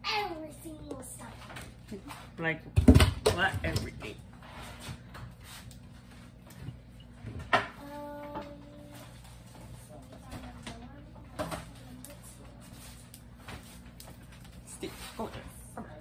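Indistinct talking in a small room, loudest in a burst of voice about three seconds in, with a few scattered knocks and a low steady hum underneath.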